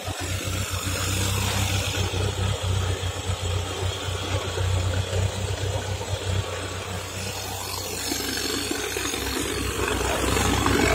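Classic Lada (VAZ) sedan's engine idling steadily, an even low hum.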